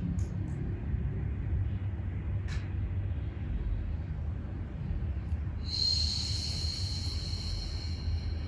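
A steady low rumble, with a long soft hiss of breath starting a little before six seconds in: a slow exhale through the mouth during a Pilates breathing exercise.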